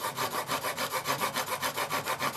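Steel plane blade in a narrow-wheeled honing guide rubbed rapidly back and forth on a coarse DMT diamond plate, an even run of about six gritty strokes a second. The pressure is on one side of the blade, grinding a slight camber into the edge and working up a burr.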